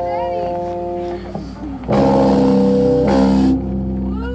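Amplified electric guitar chords ringing out: one chord held until about a second in, then a louder chord struck about two seconds in that cuts off about a second and a half later, leaving a lower note ringing.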